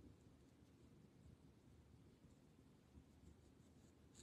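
Near silence, with faint strokes of a brush laying ink into small sections of a paper drawing tile.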